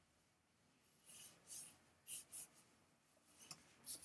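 Near silence: room tone, with a few faint, short rustles.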